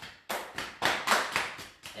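Open hands slapping both thighs at once in a quick series of slaps, about three a second, as a self-massage to warm up the leg muscles.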